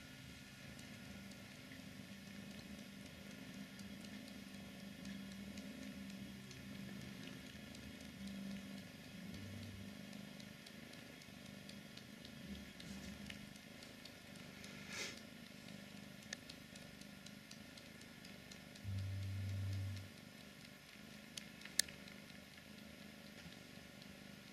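A cat suckling on a knitted wool sweater: faint, soft, wet sucking and squishing sounds. Late on there is a brief low hum, followed by a single sharp click.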